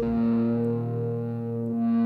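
Live band music: a guitar played through effects pedals holds a distorted, ringing chord over a steady low bass note, with no singing.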